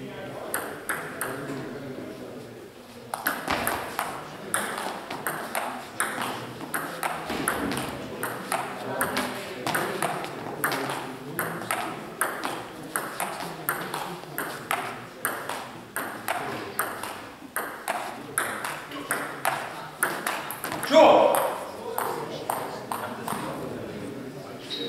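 Table tennis ball clicking back and forth between rackets and table in a long rally, about two hits a second, starting about three seconds in and ending near 20 seconds. A loud cry follows the rally near the end.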